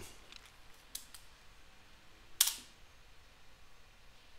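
Computer keyboard keys being typed: a few faint key clicks, then one much louder, sharp key strike about two and a half seconds in.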